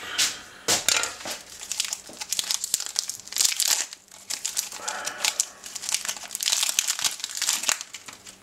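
Foil-lined plastic wrapper of a wafer bar being pulled open and crinkled by hand: a dense run of irregular crackles.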